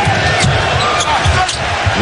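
Basketball dribbled on a hardwood court, bouncing as a series of low thuds, with a few short sneaker squeaks over steady arena crowd noise.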